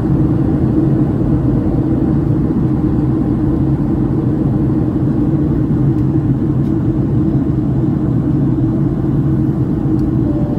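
Steady cabin noise of a Boeing 757-300 in flight, heard from inside the cabin: the low hum of the engines mixed with rushing airflow, unchanging throughout.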